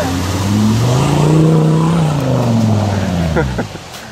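An off-road SUV's engine revving up and then easing off, its pitch climbing for about a second and a half before falling away, as it pushes along a muddy dirt track with its tyres throwing up dirt.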